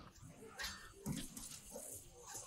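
Faint battle sounds from a war film's soundtrack: scattered short sounds and brief, distant cries, with no steady sound.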